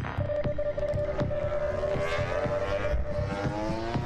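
A vehicle engine revving up, its pitch rising through the middle, over a steady tone and a regular beat of short knocks.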